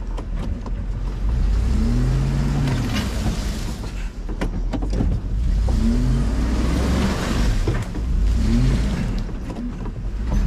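Truck engine revved up and let back down three times, straining to pull a hooked-up camper trailer out of a rut it is stuck in.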